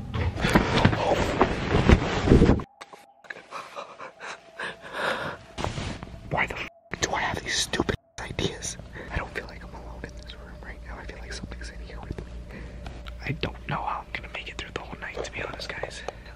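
A man whispering, heard close, broken by a few sudden drops to silence, with a faint steady hum underneath.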